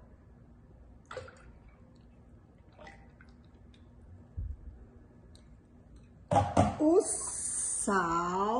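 Cooking oil poured from a glass into a glass blender jar of milk, a faint liquid pour with a small click and a low thump. About six seconds in come a couple of sharp knocks and a short burst of voice with a hiss.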